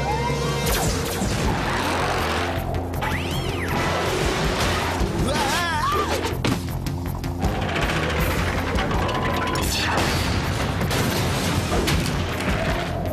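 Action-cartoon soundtrack: steady background music overlaid with sudden crash and impact sound effects and a couple of sweeping pitched effects.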